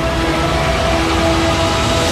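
Film-trailer soundtrack between lines of dialogue: held music notes over a heavy, steady low rumble.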